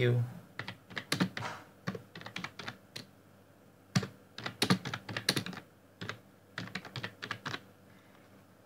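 Typing on a computer keyboard: runs of quick keystrokes, with a pause of about a second and a half near the middle.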